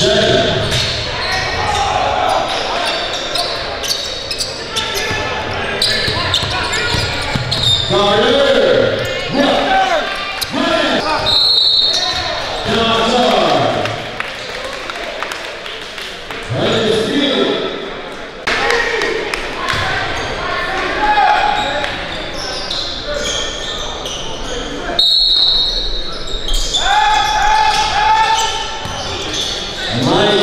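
Basketball game sound in a large gym: a ball bouncing on the court and short knocks from play, with indistinct voices of players and spectators throughout.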